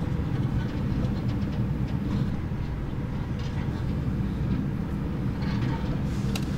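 Steady low rumble of a moving car heard from inside the cabin: engine and road noise.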